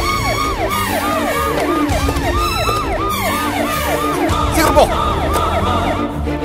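Police vehicle siren on a fast yelp: a pitch that jumps up and then slides down, about three times a second, over background music with a low beat.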